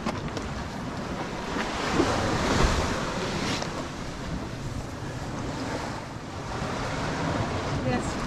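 Small sea waves washing onto a sand beach below a cliff, the surf swelling about two to three seconds in, with wind buffeting the microphone.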